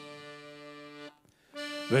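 Hohner Concerto III piano accordion holding a steady chord that stops just after a second in. After a brief gap, a new chord starts near the end as the singing begins.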